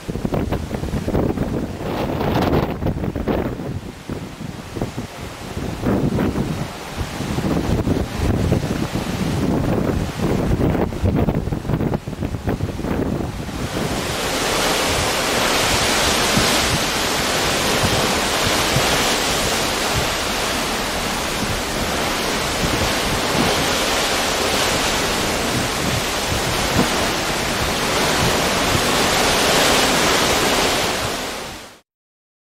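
Wind buffeting the microphone in gusts over the rush of the sea along a moving ship's side. About halfway through it changes to a steady, even hiss of wind and breaking waves.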